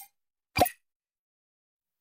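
A single short pop sound effect for an animated logo, about half a second in.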